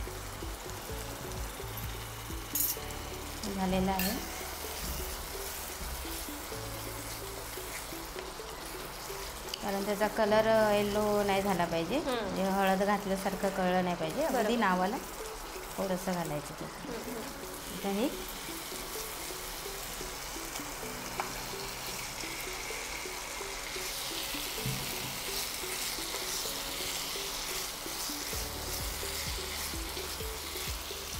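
Green mint-and-coriander masala sizzling in a kadhai as a wooden spatula stirs it, under background music. The sizzle grows louder and hissier about 24 seconds in, as chicken pieces go into the pan.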